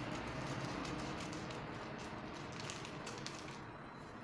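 Scissors cutting through brown pattern paper: a steady run of small crisp snips and paper crunching that eases off slightly near the end.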